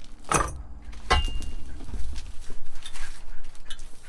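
Metal hammock-stand pole being pulled out of its cardboard box: two knocks and clinks of metal, the second ringing briefly about a second in, then scattered small clicks and taps as it is handled.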